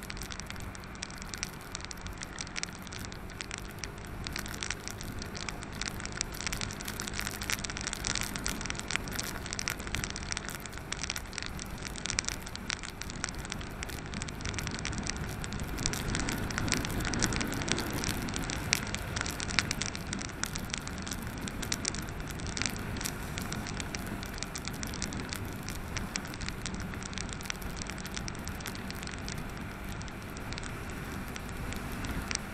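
Wind and wet-road noise crackling constantly on an action camera's microphone on a motorcycle riding on a rain-soaked road, with a faint steady engine hum underneath. The noise grows louder a little past halfway, then eases.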